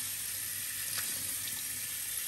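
Tap water running steadily onto glass noodles in a perforated plastic container in a sink as they are rinsed by hand.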